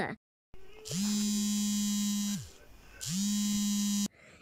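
Two long electronic buzzing tones, each swooping up into a steady low buzz. The first lasts about a second and a half and sags away at its end; the second starts about three seconds in and cuts off suddenly.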